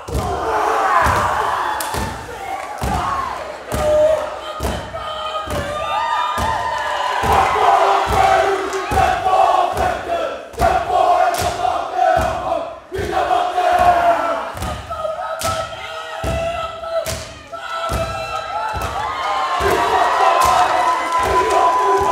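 A kapa haka group performing a haka: many voices shouting and chanting in unison over rhythmic stamping and body slaps, about two beats a second.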